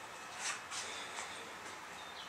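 Quiet room tone: a faint steady hiss with a soft, brief rustle about half a second in.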